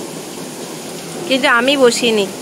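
Steady hiss of heavy rain, with a voice speaking briefly near the end.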